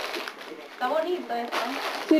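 Short stretches of indistinct voices, heard twice in the second half, on camcorder audio.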